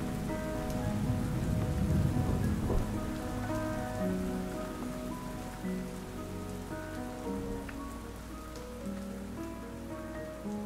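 Steady rain falling, with soft background music of slow, long-held notes over it. A low swell is loudest about two seconds in, and the whole gradually gets quieter toward the end.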